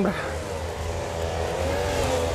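Distant motor-vehicle engine droning, its pitch shifting slowly, over low rumbling wind noise on the microphone.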